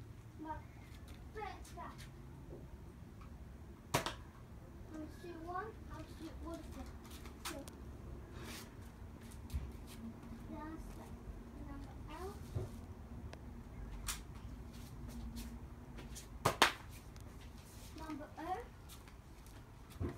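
Nerf blaster firing foam darts: a sharp pop about four seconds in and two louder pops in quick succession near the end, with a child's voice in the background.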